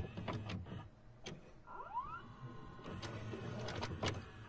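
Video cassette recorder mechanism starting to play a tape: a run of sharp clicks and a small motor whirring, with a short rising whine about halfway through.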